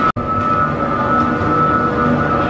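Gondola lift station machinery running steadily, with a constant high whine over a low hum, as cabins move through the station.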